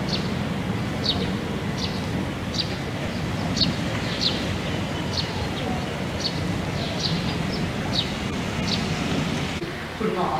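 A steady low rumble of wind on the microphone, with a bird repeating a short, high, falling chirp about every second.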